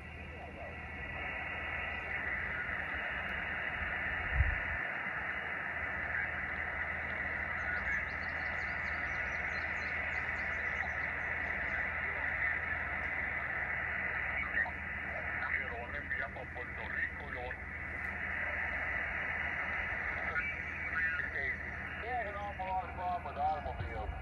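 Xiegu X6100 HF transceiver's speaker hissing with 20-meter band static through its narrow receive filter, while tuning, with faint sideband voices coming and going in the noise. A single low thump about four seconds in.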